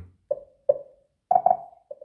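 Xiaomi Mi Smart Clock's speaker playing short feedback blips as its touchscreen volume is stepped down. There are about five brief tones at irregular spacing, each dying away quickly.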